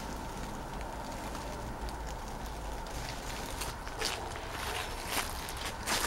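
A few faint footsteps and rustles on dry leaf litter, heard as scattered soft clicks over a steady low outdoor rumble.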